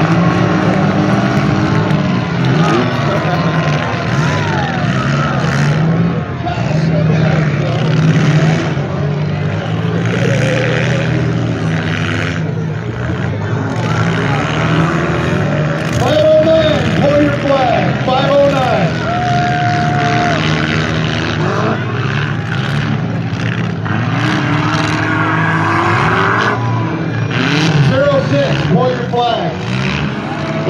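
Demolition-derby car engines running and revving together, pitch rising and falling, with sudden knocks as the cars collide. Spectators' voices are mixed in.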